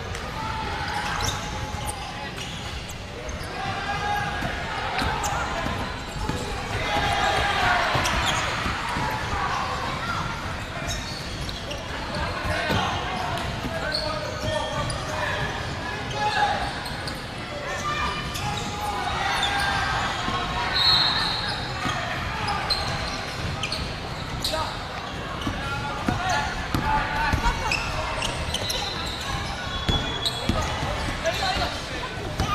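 Basketball game in a large echoing gymnasium: a ball bouncing on the wooden court, with players' and spectators' voices throughout.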